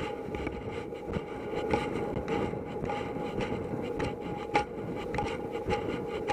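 Horse cantering across grass, heard through a helmet camera: wind rushing over the microphone, with a regular thud of the stride about every half second.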